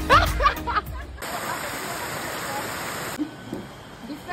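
Music with voices for about the first second, then a steady rush of shallow river water flowing for about two seconds, which cuts off suddenly.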